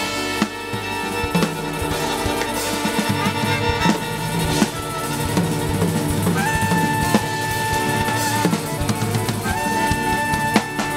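Live band music: a bowed violin playing a melody with long held notes over drum kit and percussion.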